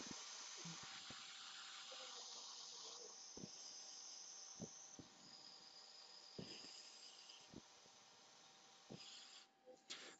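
Handheld propane torch burning with a faint, steady hiss, stopping near the end. A few faint ticks sound through it.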